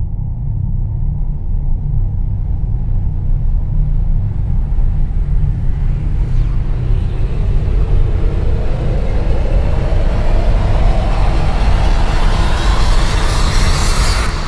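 Deep, steady rumbling drone, joined about halfway through by a sweep that rises slowly in pitch and grows louder and brighter: a cinematic riser building tension.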